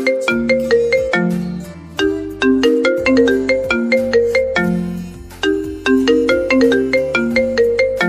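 Mobile phone ringing with a melodic ringtone: a bright tune of short chiming notes over a bass line, the phrase repeating about every three and a half seconds.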